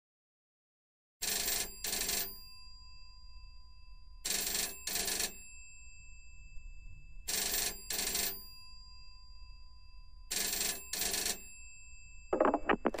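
A telephone ringing in a double-ring pattern: four ring-rings about three seconds apart, starting about a second in, over a low steady hum.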